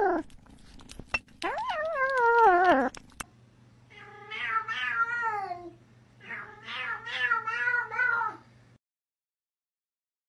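Cats meowing: one long, wavering meow that falls in pitch, then, after a break, two runs of shorter wavering meows.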